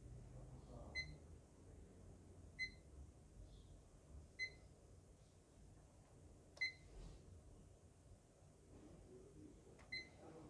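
Uni-T UT61B+ digital multimeter's buzzer giving short high beeps, one every second or two, as its buttons are pressed and its dial is turned.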